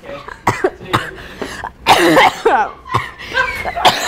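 Laughter and coughing in short, irregular bursts, with one louder outburst about two seconds in.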